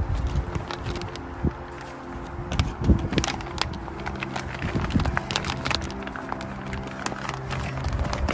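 Clear plastic sheet crinkling in many short crackles as it is wrapped by hand around a ball of sphagnum moss, over steady background music.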